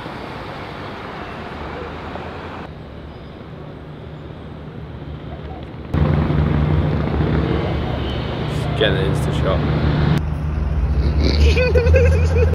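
City street traffic: cars and trucks running past with a steady low engine rumble that gets much louder about six seconds in.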